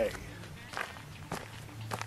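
A few faint, soft knocks about half a second apart over a low, steady background.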